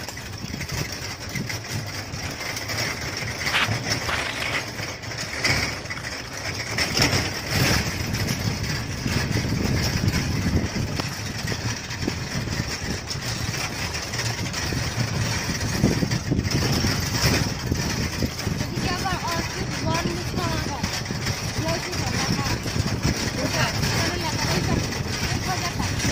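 Steady rumble of a moving ride along a forest road, with scattered knocks and indistinct voices.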